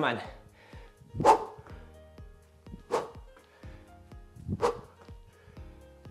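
A man's short effort grunts, three of them about a second and a half apart, in time with his side-to-side skater hops, over steady background music.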